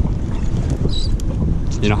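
Wind buffeting the microphone: a loud, steady, ragged low rumble.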